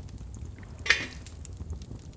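Cooking sounds from a metal saucepan of batter on an open hearth fire: one sharp clink of a utensil against the pan about a second in, with a short ring, over a low steady rumble.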